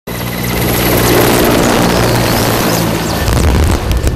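Helicopter running loud and steady, a dense engine-and-rotor rush with a low hum underneath.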